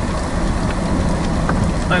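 Rain striking the windshield and body of a vehicle, heard from inside the cab, over a steady low rumble.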